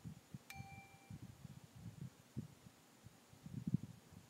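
A click-and-ding notification sound effect: a sharp click about half a second in, then a short two-note chime. Faint low thumps run underneath, loudest near the end.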